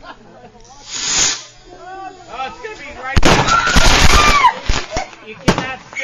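Consumer fireworks going off close by: a short hiss about a second in, then about a second and a half of rapid crackling bangs, and a single sharp crack near the end.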